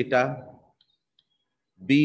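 A man's lecturing voice, with a pause of about a second in the middle in which two faint clicks are heard.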